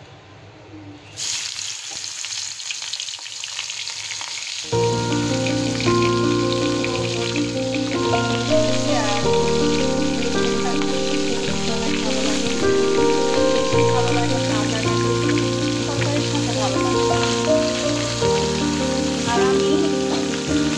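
Small puti fish (pool barb) frying in hot oil in an iron karai, a steady sizzle that starts about a second in as the fish go into the oil. Background music joins about five seconds in and plays over the sizzle.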